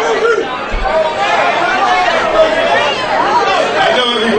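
Crowd chatter: many voices talking and calling over one another in a packed room.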